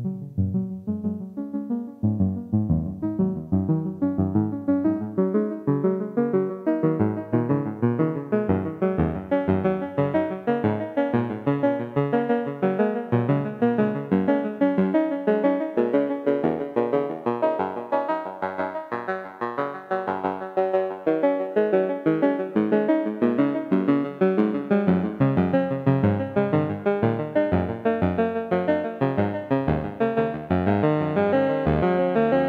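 Eurorack modular synth playing a fast generative sequence of short notes: an EN129 oscillator, its triangle, saw and square waves mixed, running through a Steve's MS-22 dual filter. The tone grows brighter over the first several seconds as the filter is opened, then holds.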